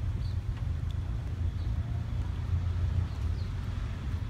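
Outdoor background noise: a steady low rumble with a faint hiss over it, and a few faint high chirps.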